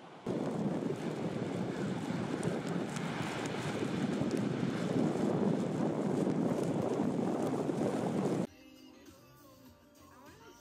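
Ocean surf: a steady rush of breaking waves and whitewater, cutting off suddenly about eight and a half seconds in.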